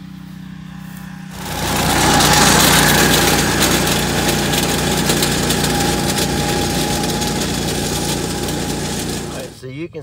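Small-engine reciprocating core aerator with camshaft-driven tines, running as it is pushed across dry ground. It idles at first, then runs much louder with its tines working from about a second in, until it drops away near the end.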